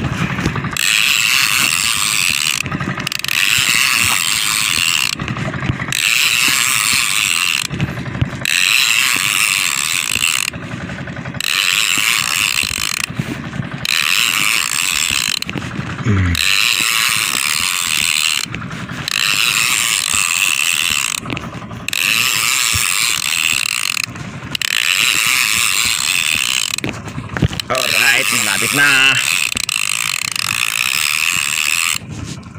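Spinning fishing reel ratcheting as it is cranked hard in spells of about two and a half seconds, with brief pauses between, over and over. A hooked fish is being reeled in.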